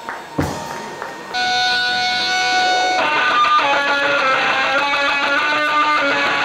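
Live electric guitar: after a single drum hit, the guitar comes in a little over a second in with one loud held note, then at about three seconds breaks into a riff of quickly changing notes.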